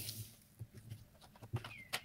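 A cardboard product box being handled and set down on a cloth-covered table: a brushing swish at the start, then a few light taps and knocks, the sharpest just before the end. A steady low hum runs underneath.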